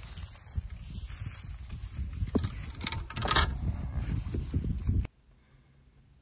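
Close rustling and low rumbling handling noise while a calf is held in a grass pasture, with a louder rustle past the middle; it cuts off suddenly to near silence about five seconds in.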